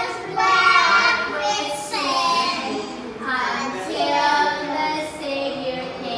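Young children singing a song, with long held notes.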